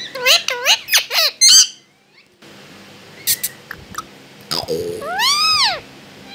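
Pet parakeet calling: a quick run of short, bending, high-pitched calls, then after a short pause a few clicks and one long call that rises and falls near the end.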